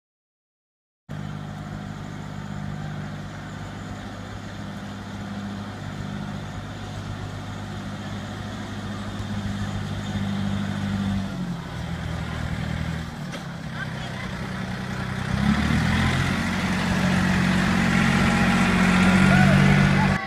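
Engine of a small trackless train running steadily, its pitch shifting in steps as it drives, louder in the last few seconds.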